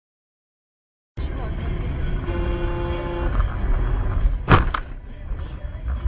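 Dashcam audio from inside a car: steady low road and engine rumble, a car horn sounding for about a second, then two sharp bangs a quarter-second apart, the first the loudest.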